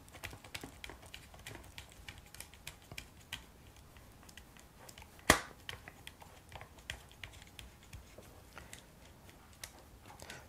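Quiet, irregular small clicks and ticks from turning the locking dial of an Olympus HLD-6P battery grip to drive its screw into the HLD-8G grip and from handling the plastic grips, with one sharper click about five seconds in.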